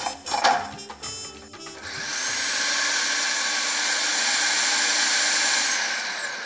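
A few plastic clicks as the food processor's lid and feed tube are fitted, then its motor starts about two seconds in and runs steadily at high speed, blending a dry, crumbly mix of milk powder and cream. It shuts off near the end and begins to spin down.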